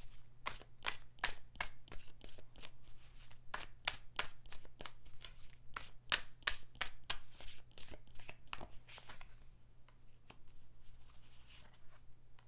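Tarot deck being shuffled by hand: a quick run of card slaps, about three a second, that stops about nine and a half seconds in, followed by a few fainter clicks as cards are handled.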